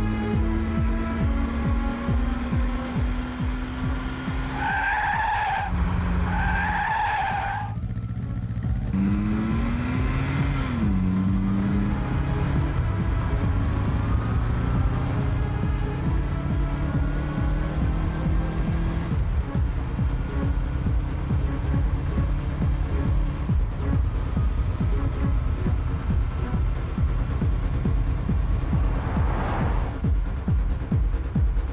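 Film soundtrack: electronic music with a heavy steady beat, mixed with car engine and tyre-skid sound effects. Two short high tones sound about five and seven seconds in.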